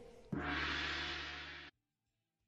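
The last notes of a dance song die away. About a third of a second in, a single deep ringing hit sounds, gong-like, with a steady low hum under it. It fades slowly and then cuts off suddenly.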